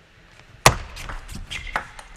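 A table tennis serve is struck with a sharp, loud click about two-thirds of a second in. Lighter ticks follow quickly as the celluloid ball bounces on the table and is returned.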